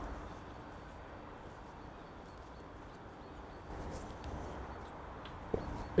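Faint sounds of a wooden serving mallet being wound round a rope, laying marline on under tension, with one sharp click near the end.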